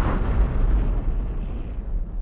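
The loud, deep rumbling tail of an explosion-like boom sound effect, slowly dying away.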